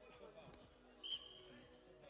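A referee's whistle gives one short, sharp, high-pitched blast about a second in. Behind it are faint voices and the murmur of a sports hall.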